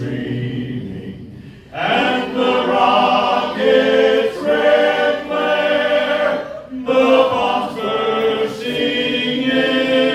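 A men's vocal group singing slowly in close harmony, a cappella, on long held chords. A new phrase swells in about two seconds in, with a brief breath break near seven seconds.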